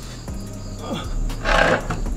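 A man's short, breathy sigh about one and a half seconds in, as he lowers himself into a chair.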